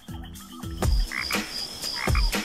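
Cartoon transition sound effect: frog-like croaks in a regular beat, about two a second, with a steady high tone over them.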